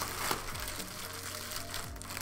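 Plastic bubble-wrap packaging rustling and crinkling as a backpack is pulled out of it, with faint music underneath.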